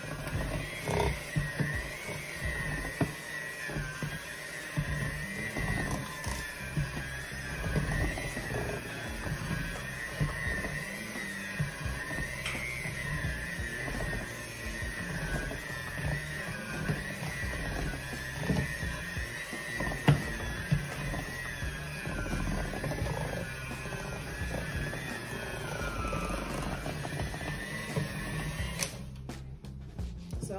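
Electric hand mixer running with its beaters in thick cookie dough: a steady motor whine that wavers up and down in pitch as the beaters labour through the dough, over a choppy low churning. It stops abruptly near the end.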